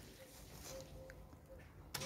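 Near silence: faint outdoor background with a few short, faint tones and a single click near the end.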